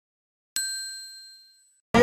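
A single bell-like metallic ding, struck once about half a second in and ringing out with a few high, clear tones that fade over about a second. Near the end, loud voices and music cut in suddenly.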